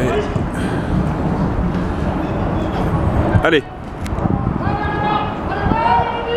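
Men shouting during a football match: a sharp call of "allez" a little past halfway and more shouted calls near the end, over a steady low background noise.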